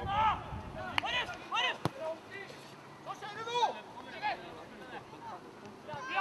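Football players shouting short calls to each other during play, with a single sharp knock of the ball being kicked a little before two seconds in.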